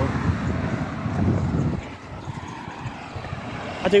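Low rumble of a passing road vehicle, which cuts off suddenly about two seconds in, leaving quieter outdoor background.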